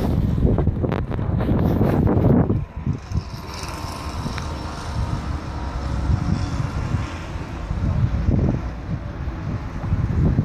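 Wind buffeting the phone's microphone, a loud low rumble for the first two and a half seconds that then drops to a weaker, gusting rumble.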